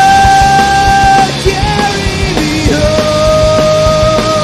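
Live pop-punk band playing loud: drums, distorted electric guitars and bass. Long held notes sit over the top; one slides down about halfway through and another rises near the end.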